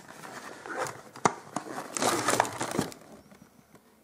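Rustling and crinkling of packaging as items are handled in a cardboard parcel, with a few sharp clicks; it dies down near the end.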